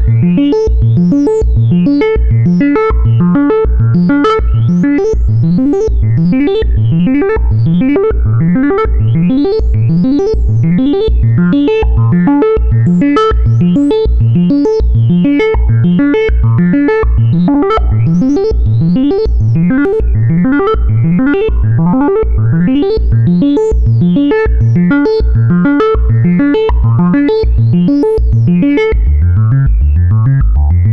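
A modular synthesizer patch built from the mki x es.edu DIY kit modules plays a sequenced loop: a steady pulse of short synth notes over a held tone, each note sweeping upward in brightness. Near the end the bass notes get heavier.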